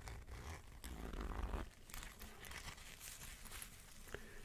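Faint scratchy rasp of the zipper on a costume mask's mouth being slowly drawn open by hand, with some handling rumble from the mask.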